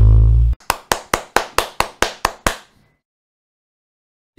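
Beatboxed intro jingle: a loud held bass note that cuts off about half a second in, then a run of about nine sharp clap-like hits, about four a second, fading away by about three seconds in.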